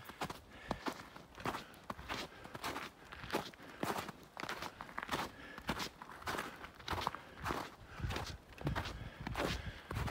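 Footsteps crunching on snow, about two steps a second. The steps are from hiking boots fitted with Yaktrax traction coils.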